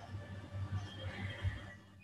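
Stylus writing on a tablet screen: a run of soft, irregular taps and scrapes that stops shortly before the end.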